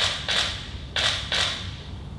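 Four short clacks in two quick pairs, about a second apart, as moves are played on a computer chess board.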